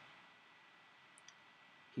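Near silence: room tone with a faint steady hiss and a thin high tone, broken by a couple of tiny faint clicks a little past the middle.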